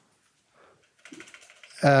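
Faint computer-keyboard typing: a quick run of light key clicks for about half a second, starting about a second in, as someone types a search.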